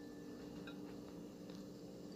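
Quiet kitchen room tone: a steady low hum with a few faint, soft ticks.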